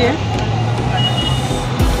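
Busy roadside noise with a steady low engine hum from traffic, with music playing.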